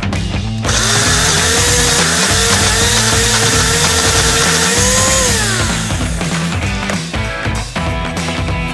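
Personal blender's motor starting less than a second in and blending a thick fruit smoothie for about four and a half seconds, its hum rising as it spins up, then falling away as it winds down after the motor is switched off.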